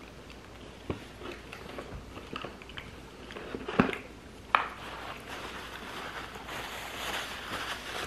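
A man chewing a bite of a soft, frosted chocolate pumpkin cheesecake cookie, with scattered small wet mouth clicks and two sharper clicks around the middle.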